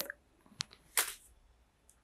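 Camera tripod leg being handled as it is extended: a sharp click about half a second in, a short rustle about a second in, and a faint tick near the end.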